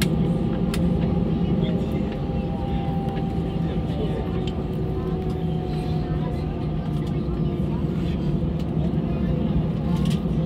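Airbus A320 cabin noise while taxiing, the engines running at taxi idle: a steady low rumble with a few faint steady whining tones above it.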